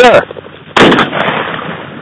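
A single shotgun shot fired at a flushed pheasant, about three-quarters of a second in, its report dying away over about a second.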